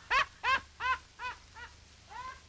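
A high-pitched voice laughing in a run of short falling syllables, about three a second, fading away.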